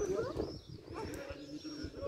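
Indistinct chatter of several children's voices overlapping, with no clear words.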